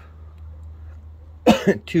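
A man coughs about one and a half seconds in, a short sharp cough in two quick parts, over a faint steady low hum.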